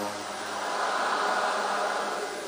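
Steady background hiss with no voice in it, right after a chanted line stops.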